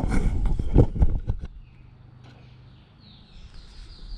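Handling noise from a handheld camera: a quick flurry of knocks and rustles in the first second and a half. Faint, high, short chirps repeat through the last second or so.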